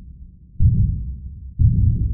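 Two deep, low thuds a second apart, each fading out slowly: a heartbeat-like sound effect on a film soundtrack.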